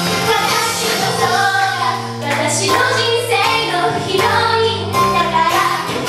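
Two girls singing a J-pop idol song into handheld microphones over a loud, continuous pop backing track.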